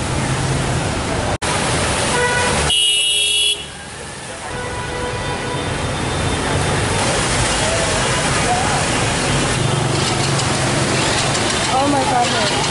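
Traffic on a flooded street: motorbike and car engines driving through deep water with a steady rush of splashing. A horn honks briefly about three seconds in.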